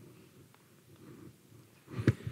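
Faint room tone: a low, steady background haze with a single faint click about half a second in.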